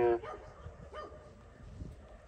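A man's voice through a megaphone, holding the end of a word for a moment and then breaking off. A quiet pause follows, with a few faint, short sounds in the background.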